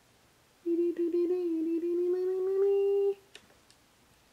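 A woman humming one long held note for about two and a half seconds, starting under a second in, its pitch slowly rising; a couple of faint clicks follow.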